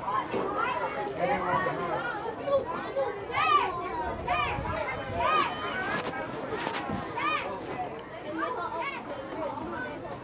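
Overlapping voices of children and adults talking and calling out across an outdoor field, with a few sharp knocks or claps about six to seven seconds in.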